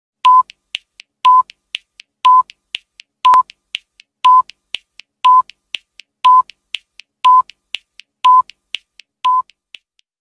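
Countdown-timer sound effect: ten short, identical electronic beeps, one a second, each followed about half a second later by a softer tick, ticking down from ten to one.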